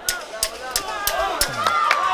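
Ringside sound of a boxing bout: about six sharp smacks in under two seconds over shouting from the crowd and corners, with one long held call starting near the end.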